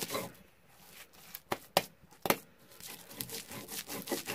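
Hands gathering and pressing coarsely ground nixtamal masa on a stone metate: soft crumbly rustling, with three short sharp taps close together about halfway through.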